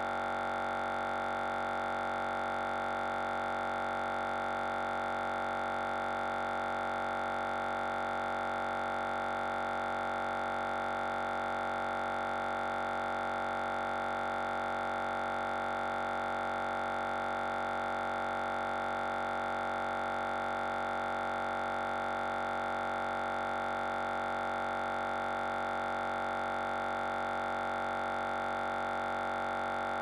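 Steady, unchanging electronic hum made of many tones at once: the sound of a stuck audio stream in a video call while the shared video is frozen.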